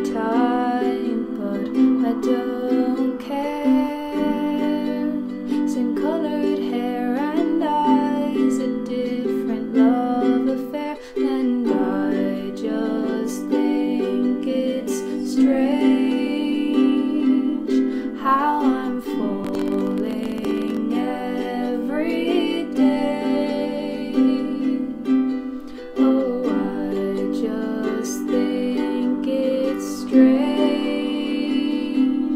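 A woman singing to her own strummed ukulele accompaniment.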